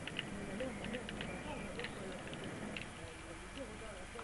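Faint, indistinct voices with a few short, light clicks scattered through, over a steady background hiss.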